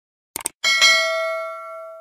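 Subscribe-button animation sound effects: a quick double mouse click, then a single notification-bell ding that rings on and fades out over about a second and a half.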